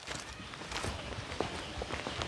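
Faint footsteps of people walking on a gritty dirt-and-concrete road, a few soft irregular steps.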